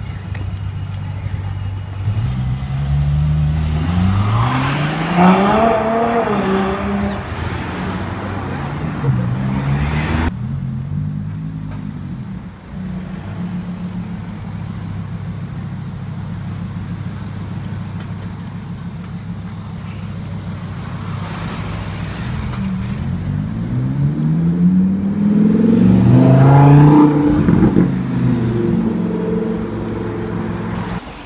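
Supercar engines accelerating over a steady low traffic drone. A few seconds in, an engine revs up, climbing in pitch for about four seconds. A shorter rev comes around ten seconds in. Near the end, a louder engine revs up for several seconds, the loudest sound here.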